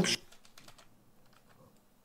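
A few faint computer keyboard clicks in the first second, then near silence.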